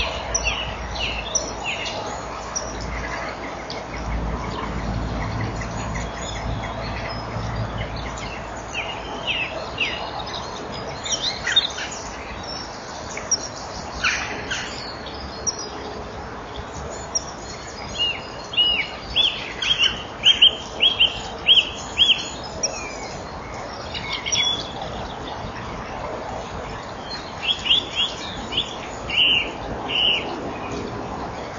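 Bird chirping in short, high, falling notes, picked up by a nest-box camera microphone over a steady hiss. The calls come scattered at first, then as a quick regular run of about eight calls past the middle, with another cluster near the end.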